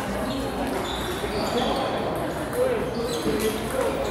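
Celluloid-style plastic table tennis ball being struck by rubber paddles and bouncing on the table in a rally: a series of short, high pings roughly every half second, with the murmur of the hall behind.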